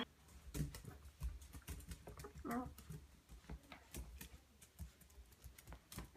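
A small dog's claws clicking on a hardwood floor as it walks, a quiet run of light, irregular ticks.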